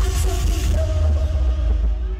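Live pop music played loud through a concert sound system, with heavy bass and held melody notes; the treble thins out near the end.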